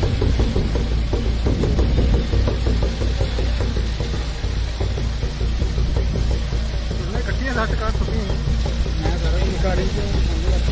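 Sikh devotional kirtan singing with music, with a steady low rumble underneath. A singer's wavering melody stands out most clearly in the second half.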